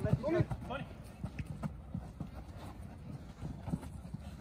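Football players' running footsteps and ball touches on an artificial-turf pitch: a scatter of soft, irregular thuds, with a shout in the first second.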